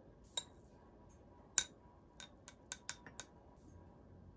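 A metal spoon clinking against a ceramic mug of foamy latte: about eight light, ringing clinks, the loudest about a second and a half in, then a quicker run of lighter ones near the end.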